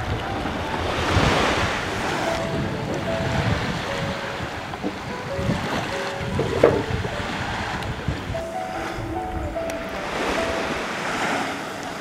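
Sea water washing and lapping close to the microphone, with wind on the mic, swelling twice, near the start and near the end. A thin melody of short single notes plays alongside, and a brief sharp sound stands out a little past halfway.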